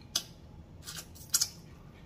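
Close-miked mouth sounds of eating: about three short, wet lip smacks and clicks spaced across a couple of seconds.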